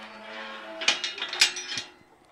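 Steel pipe farm gate creaking on its hinges in a drawn-out squeal, with two sharp knocks of the gate about a second in and again half a second later.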